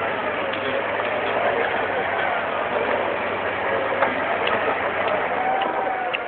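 Jeep Cherokee engine running under load as it crawls up a steep dirt gully, its revs rising and falling, with people talking around it. A sharp knock comes about four seconds in.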